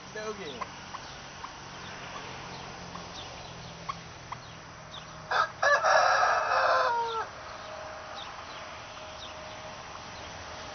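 A rooster crowing once, about five seconds in: a short opening note, then a drawn-out call that falls away at the end.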